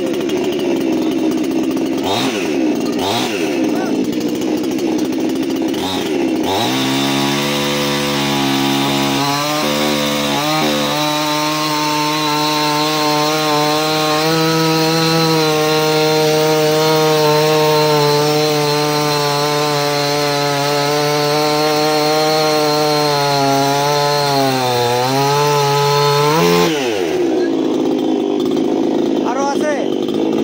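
A 60 cc two-stroke chainsaw with a 28-inch bar idles with a couple of quick throttle blips. About six seconds in it is held at full throttle and cuts through a thick log, running at a steady high pitch with slight dips under load. Near the end the throttle is released and the engine drops back to idle as the cut finishes.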